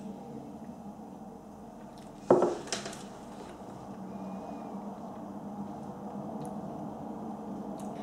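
A whisky tasting glass set down on a wooden table: a knock about two seconds in and a lighter tap just after. Otherwise a faint steady room hum.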